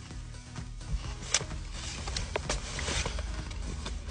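Soft background music under close chewing of a bite of sub sandwich on a crusty roll, with a few short, sharp crunches.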